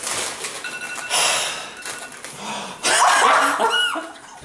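People laughing hard in two loud, breathy bursts, about a second in and again about three seconds in.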